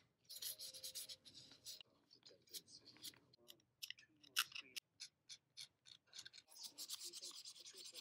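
Faint scratching and rubbing as a pointed tool scrapes rust off the metal rim of a small toy eye. The scraping comes in short irregular strokes and little clicks, with longer rubbing passes about half a second in and again near the end.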